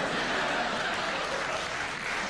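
Studio audience applauding steadily after a punchline.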